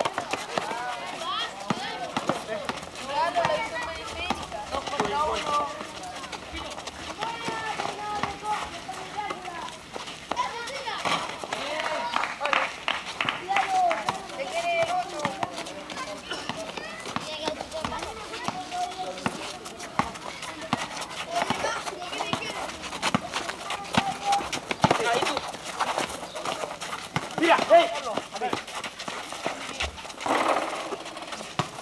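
Basketball players running and dribbling on an outdoor concrete court: irregular ball bounces and footfalls mixed with players' distant calls and chatter.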